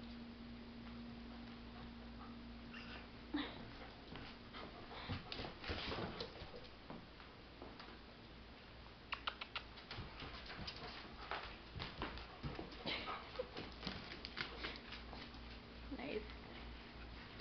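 A white German shepherd and a chihuahua playing on a hardwood floor: faint scuffling and claws clicking on the wood, the clicks coming thicker in the second half.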